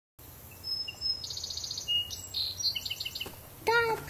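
Songbirds chirping and trilling in a series of short, high calls and quick repeated notes. A voice starts speaking near the end.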